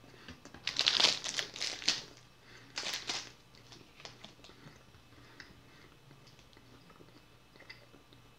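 Plastic snack wrapper crinkling as it is handled, in two bursts: a longer one in the first two seconds and a short one about three seconds in.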